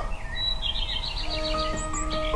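Ringtone music: a quick run of high bird-like chirps, joined about a second in by sustained electronic notes.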